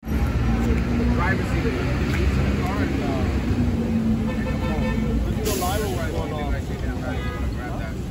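Street ambience: people talking in the background over the steady low rumble of city traffic and idling vehicles.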